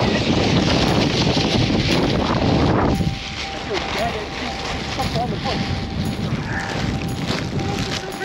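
A black plastic trash bag rustling against the microphone, mixed with wind, loud for about three seconds and then dropping to a quieter rustle with a faint steady tone.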